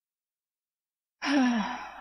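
A woman's sigh after a second of silence: a breathy exhale with her voice sliding down in pitch.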